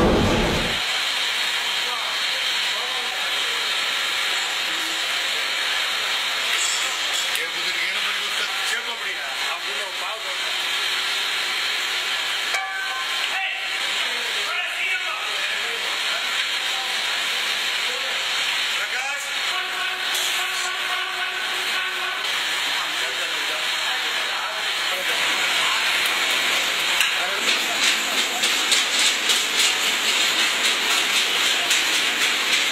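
A steady hiss that grows louder and pulses quickly in the last few seconds.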